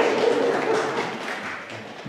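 A small congregation clapping, the applause fading out over the two seconds.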